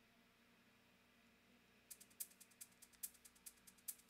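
Near silence for about two seconds, then a MIDI percussion loop in Cubase starts playing: bright, high-pitched percussion hits in a steady rhythm, about five a second, with no low drums.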